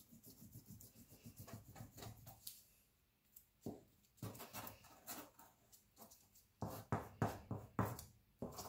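Purple glue stick rubbed back and forth over paper in quick repeated strokes, faint, with a short lull about three seconds in and stronger strokes near the end.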